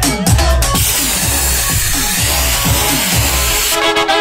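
Electronic dance music with a steady four-on-the-floor kick drum at about two beats a second. Under it a loud hiss rises in from about a second in and stops sharply just before the end, as bright synth chords come in.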